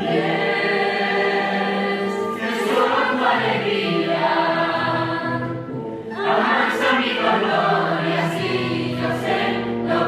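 A mixed choir of teenage students singing together in long held notes, boys' and girls' voices combined.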